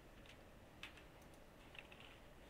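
A few faint, sharp clicks of a computer mouse against near-silent room tone.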